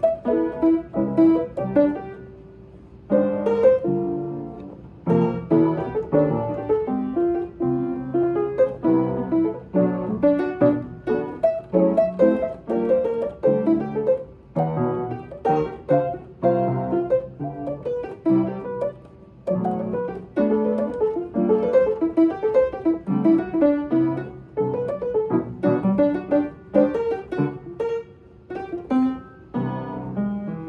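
Upright piano played with both hands: a continuous flow of chords and melody notes, with one brief lull about two seconds in where the notes ring out and fade before the playing picks up again.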